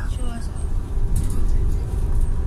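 Double-decker bus in motion, heard from inside on its upper deck: a steady low rumble of engine and road noise.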